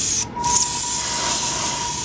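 Airbrush spraying paint: a short puff of air, a brief break about a quarter second in, then a continuous hiss of spray, with a steady whine underneath.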